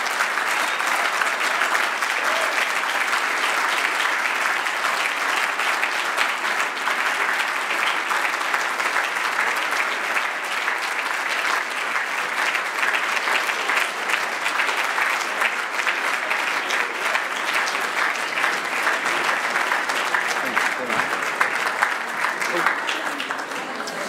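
Conference audience applauding steadily, a dense run of many people's handclaps that eases a little near the end.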